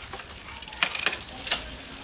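Shimano 105 road-bike drivetrain turned by hand: the chain runs over the chainrings and sprockets, with a quick cluster of clicks about a second in and another shortly after as the front derailleur shifts the chain onto the other chainring.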